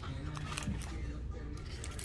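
Quiet handling of a cardboard box, with faint scattered clicks and rustles as the flaps are opened.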